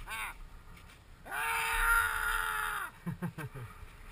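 A person's long held shout, steady in pitch for about a second and a half before dropping off, with a few short vocal sounds around it.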